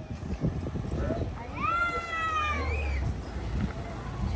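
A single drawn-out, high-pitched cry about a second and a half in, rising at first and then slowly falling, lasting just over a second.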